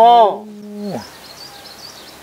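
A man speaking, his last word drawn out and trailing off about a second in; after that, only a faint, thin, wavering high sound in the background.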